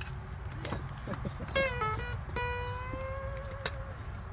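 Acoustic guitar picked with the fingers: a note about a second and a half in, then another about a second later that rings on for over a second.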